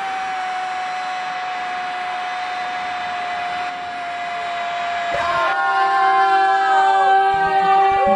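A sports commentator's drawn-out goal cry, 'goooool', held on one steady note for about five seconds. About five seconds in, louder music with several held notes comes in.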